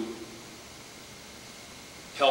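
Steady faint hiss of room tone in a pause between spoken phrases, with no other sound.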